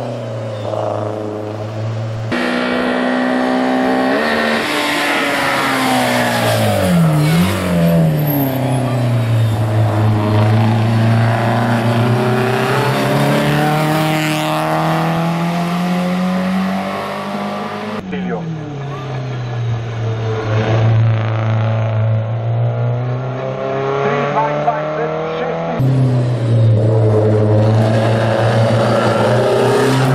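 A hillclimb racing hatchback's engine at full throttle, the revs climbing and dropping with gear changes and through the bends, in several passes joined by abrupt cuts.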